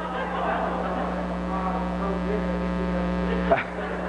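Steady electrical mains hum and buzz in the sound system, with many even overtones. Soft audience laughter in the first second, and a sharp click about three and a half seconds in.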